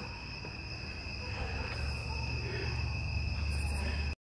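Crickets chirping steadily in a continuous high trill, with a low rumble underneath that grows a little stronger about halfway through.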